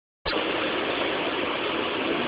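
Steady engine and road noise heard inside a rally car's cabin, an even rushing sound that cuts in just after the start.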